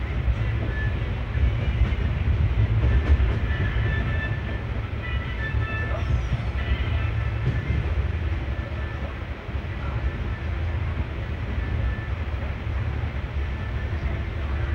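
Express passenger train running at speed, heard from an open coach doorway: a steady low rumble of wheels and coaches on the track.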